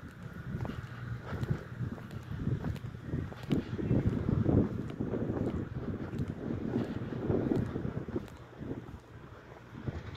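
Wind buffeting the camera's microphone in irregular gusts, a low rumbling noise that swells and drops every second or so.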